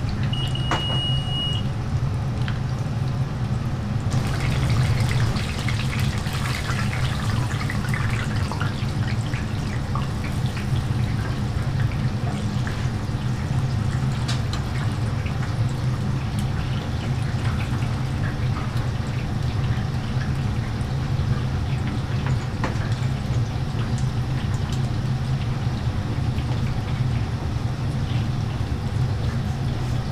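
Croquettes deep-frying in hot oil in a commercial deep fryer: a steady bubbling and crackling sizzle that grows busier about four seconds in, over a steady low mechanical hum. A short high electronic beep sounds near the start.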